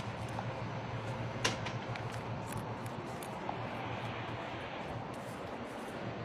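Steady background hiss with a low hum and an occasional faint click, the clearest about one and a half seconds in.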